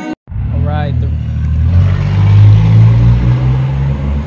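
Car engine running with a steady low drone that swells a little around the middle, after music cuts off at the start; a brief rising voice-like sound comes about half a second in.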